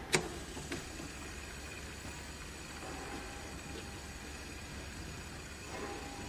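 Fidget spinner flicked with a sharp click just after the start, a smaller click following, then spinning with a faint steady whir.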